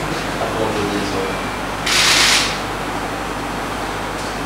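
Sound from amateur video footage played in the room: faint, distant voices, then a short, sharp burst of hiss about two seconds in.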